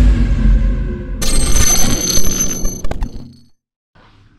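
Intro logo sting. A deep bass rumble dies away, and about a second in a bright, bell-like chime rings out, shimmering and fading to nothing shortly before the end.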